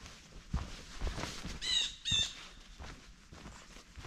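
Footsteps on a dirt forest trail, with a bird giving two short calls about a second and a half in, half a second apart.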